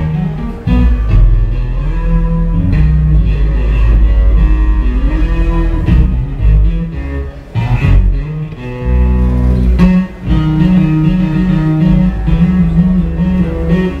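Solo electric bass guitar played live through an amplifier: low sustained notes, a note sliding upward in pitch about five seconds in, and a fast run of rapidly alternating notes near the end.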